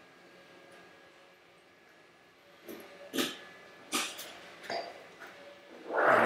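A couple of seconds of quiet, then three or four short rustles of plastic packaging being handled, about a second apart.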